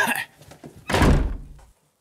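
An office door slammed shut: one loud, heavy thunk about a second in.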